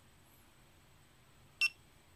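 A GoPro Hero3+ camera gives a single short beep about a second and a half in, the button-press confirmation as 'ALL/FORMAT' is selected and the delete-all prompt comes up. Otherwise faint room tone.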